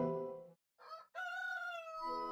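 Music fades out in the first half second, then a rooster crows, a single drawn-out cock-a-doodle-doo that sinks slightly in pitch and marks the coming of morning.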